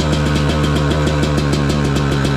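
Yamaha YZ250X's single-cylinder two-stroke engine idling steadily.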